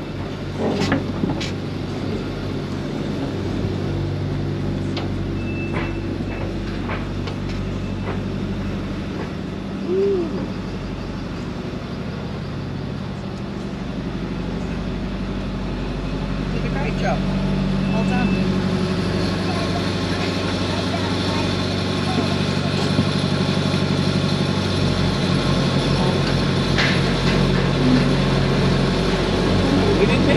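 A vehicle engine running steadily at low revs, with a few short knocks. The drone grows louder and fuller a little past halfway.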